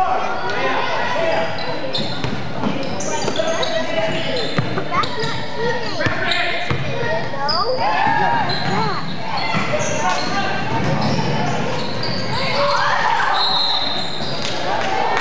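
Echoing gym ambience at a basketball game: many voices chattering and calling out, with a basketball bouncing and sneakers squeaking on the hardwood floor.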